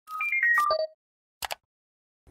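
Short logo jingle: a quick falling run of bright, ringtone-like electronic notes over a swish, over within the first second, followed by a sharp double click about a second and a half in.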